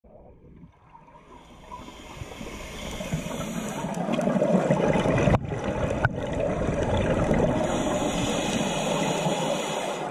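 Underwater rushing and bubbling from scuba divers' exhaled regulator bubbles. It swells up over the first few seconds to a steady level, with a brief break and a click just past the middle.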